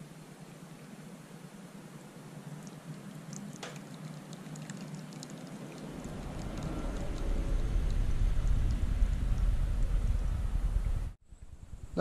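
Water poured from a kettle into a drip coffee bag in a mug: a steady trickle that grows louder from about halfway through, then cuts off suddenly near the end.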